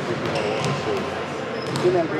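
Basketballs bouncing on a hardwood gym floor, with a few sharp knocks near the end, under talking.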